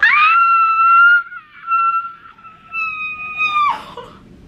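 A woman's long, high-pitched squeal of excitement. It slides up at the start, is held with a couple of brief dips, and drops away near the end.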